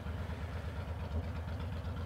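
Honda VTX 1300 V-twin engine idling at a standstill, a steady low pulse of rapid, even firing beats.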